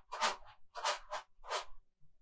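Homemade shaker, a small plastic container filled with rice, shaken in four short rattling strokes about half a second apart.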